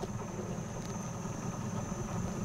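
Tour boat's engine idling, a steady low rumble with no change in pitch.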